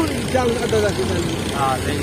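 A tractor's diesel engine idling with a steady low hum, under bits of talk.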